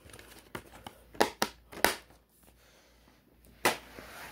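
A plastic DVD case and disc being handled: several sharp plastic clicks over the first two seconds, then a louder snap near the end.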